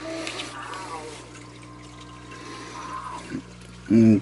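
Water trickling faintly into a turtle tank's plastic water bowl, over a steady low electrical hum.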